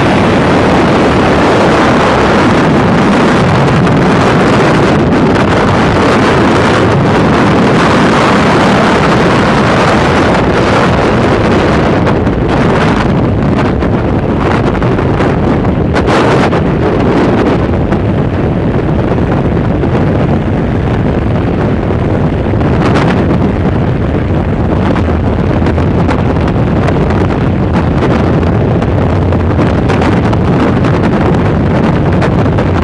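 Freefall airflow blasting over the camera's microphone: a loud, steady rushing roar of wind, with a few brief sharper flutters partway through.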